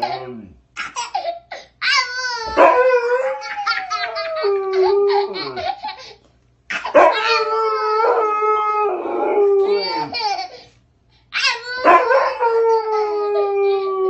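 A husky howling in long, wavering calls while a toddler laughs and squeals back at it. The exchange comes in three bouts, with short pauses at about six and eleven seconds in.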